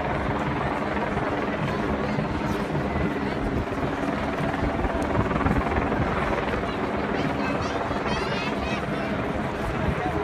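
Outdoor crowd of marchers, voices mixed into a steady murmur, over a continuous low drone. A few short high chirps or calls come through near the end.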